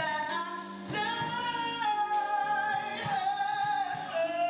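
Live music: a male lead singer sings with a band behind him, drawing out one long note from about a second in that dips slightly in pitch near the end.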